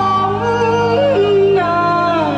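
Chinese traditional orchestra music accompanying Taiwanese opera: a sliding, wavering melody over a steady held low note.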